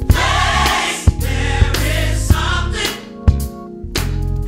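Live gospel choir singing over a band, with sharp drum hits recurring through the passage.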